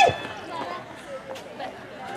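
A puppeteer's high shouted cry breaks off with a falling pitch at the start, followed by quieter open-air audience murmur with faint voices and a short click partway through.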